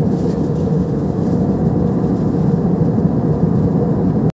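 Jet airliner cabin noise in flight, heard inside the cabin: a steady low rumble of engines and airflow that does not change.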